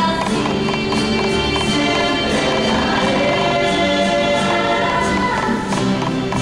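A rondalla, a mixed choir of young voices singing a slow song in close harmony over strummed nylon-string guitars and a plucked double bass, the voices holding long chords.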